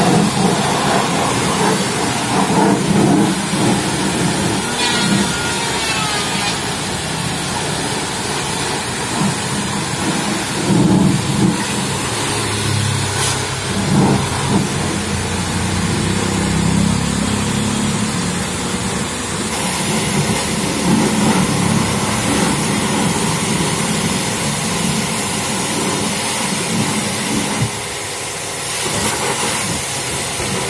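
High-pressure washer jet spraying steadily against a mud-caked tractor's rear tyre, steel cage wheel and bodywork, the water splattering off the metal and rubber.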